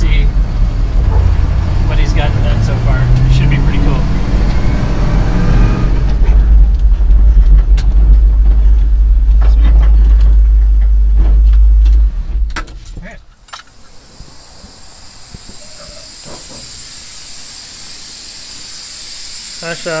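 Pickup truck engine and road rumble heard from inside the cab, with the engine note rising in pitch in the first few seconds. It stops abruptly about twelve seconds in, leaving a much quieter steady hiss.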